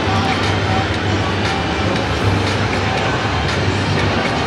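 Steady, loud din of a crowded exhibition hall: many voices blending together with music from the stands over a constant low hum.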